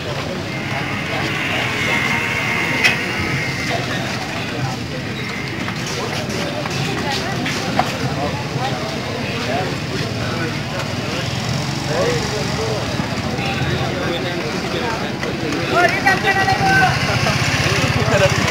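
People's voices talking, over a steady low hum, with a few brief sharp clicks.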